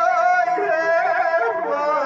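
A man's voice singing a Kashmiri noha, a Muharram lament, in long held, wavering notes that step down in pitch near the end.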